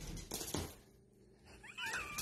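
Husky vocalizing at the masked figure: a short noisy sound in the first half-second, then a high, wavering whine that glides up in pitch, starting near the end.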